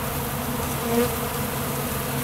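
Honeybees buzzing around an open pollen feeder, a steady hum of many wings, swelling briefly about a second in as a bee passes close.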